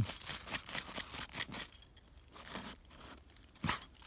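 A dog digging in packed snow with its front paws: quick, irregular scrapes and crunches, busiest in the first two seconds, with a sharper click near the end.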